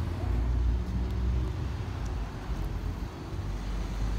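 Street traffic close by: cars moving past at low speed, a low rumble that is loudest in the first second and a half and then eases.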